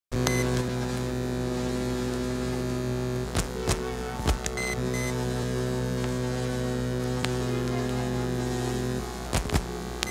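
Electronic intro music: a steady drone of layered tones over a low hum, cut by a few sharp sweeping clicks (three around the middle, two near the end) and short high beeps.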